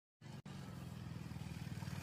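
Motorcycle engine running with a steady, rapid low beat, growing slightly louder.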